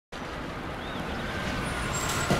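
Steady outdoor traffic ambience: a low, even road rumble with no distinct passing vehicle, and a faint short high chirp about a second in.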